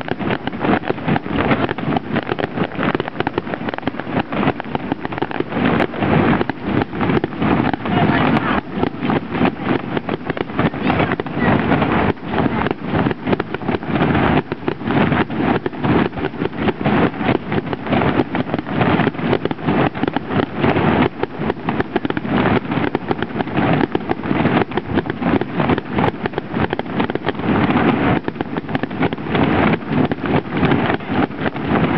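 Fireworks display going off continuously: a dense run of bangs and crackles, many a second, with no let-up, heard through a low-quality camera microphone.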